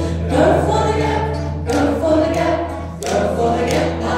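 Live folk song: a woman singing to her own strummed acoustic guitar, chords struck about every second and a half.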